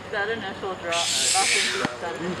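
A person's voice calling out briefly. About a second in, a loud rushing hiss takes over and lasts about a second before cutting off with a click.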